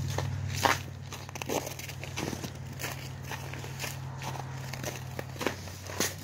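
Footsteps of a person walking, irregular steps and crunches, over a steady low hum.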